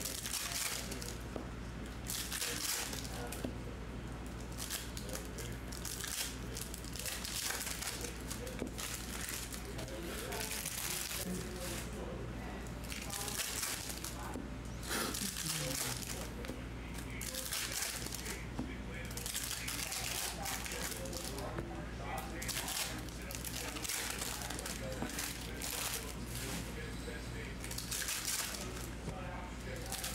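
Foil trading-card pack wrappers crinkling as packs are torn open and handled, in repeated short rustles, over a steady low electrical hum.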